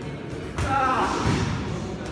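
Boxing gloves thudding on headgear and bodies as two amateur boxers exchange punches at close range, with a sudden loud hit about half a second in.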